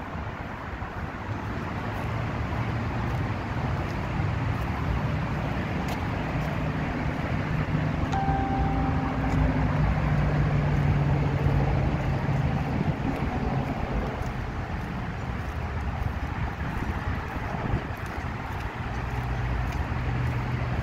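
Road traffic with wind on the microphone. A vehicle engine hum grows louder and fades out around the middle.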